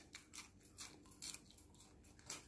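Near silence, with four or five faint, short crisp ticks spread through it.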